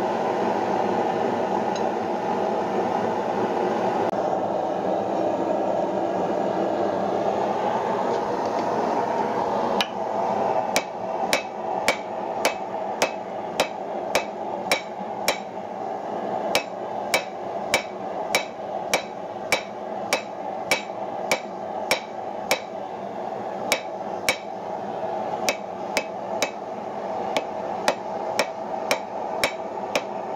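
Blacksmith's hammer striking hot wrought iron on an anvil. About ten seconds in, the blows begin at roughly two a second, each with a short metallic ring. Under them, and alone before them, there is a steady rushing noise.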